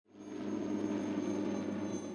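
News helicopter's steady drone of engine and rotor, fading in quickly at the start, with a low hum and a faint high whine.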